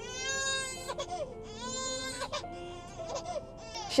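Infant crying in a car: several long, high wails that rise and fall, the loudest in the first two seconds. The baby is fussing because the car has stopped.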